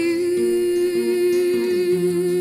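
A woman's voice holds one long, steady wordless note over classical guitar accompaniment.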